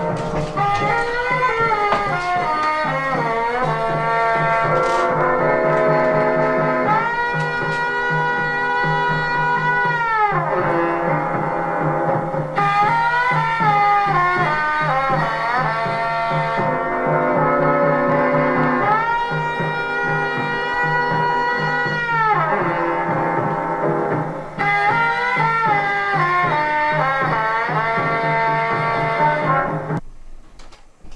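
A 1930 EMG acoustic gramophone playing a 78 record of brass music through its horn: long held brass chords alternate with moving passages. The music stops at the very end.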